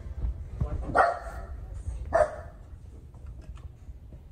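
A dog barking twice, two short barks a little over a second apart.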